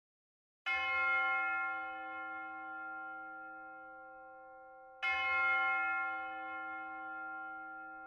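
A bell struck twice, about four seconds apart, each stroke ringing on and slowly fading.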